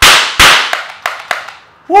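Powder-charged confetti revolver firing: two sharp loud pops about 0.4 s apart, each trailing off with echo, followed by three much fainter clicks.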